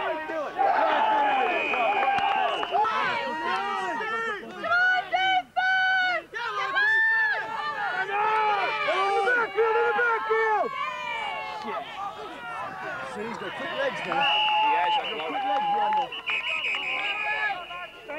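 Sideline spectators shouting and cheering during a football play, several voices overlapping, with a long steady high tone near the start and again near the end.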